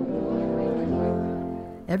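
Brass band of tubas and other brass horns playing low, held chords that change a few times, fading out near the end.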